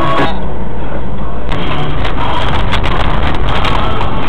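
Car cabin noise picked up by a dashcam microphone: a steady low rumble of engine and road, after music cuts off a moment in. There are a few short knocks in the second half.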